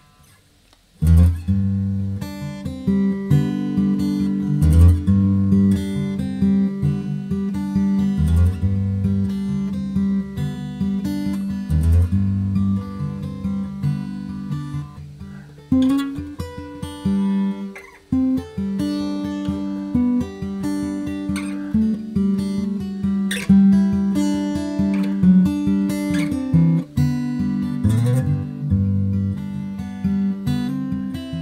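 Steel-string acoustic guitar fingerpicked at a slow practice tempo, bass notes on the low strings under higher melody notes, starting about a second in and dipping briefly about two-thirds of the way through.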